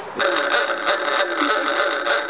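An antique horn sounding one steady, buzzing honk of about two seconds, starting a moment in.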